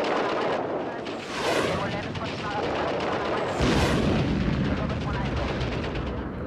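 Gunfire and blasts, with two louder surges about a second and a half and four seconds in. The second surge leaves a deep rumble underneath.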